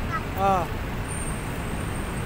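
Steady low rumble of city street traffic. About half a second in, a short single-syllable voice call cuts across it.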